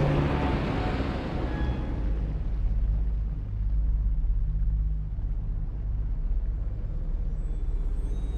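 A steady low rumble, with a hiss over it that fades away over the first two seconds.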